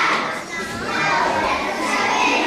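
Many young children's voices overlapping at once, with a short dip in loudness about half a second in.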